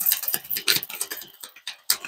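A deck of tarot cards being shuffled by hand: a quick, irregular run of crisp card clicks and snaps.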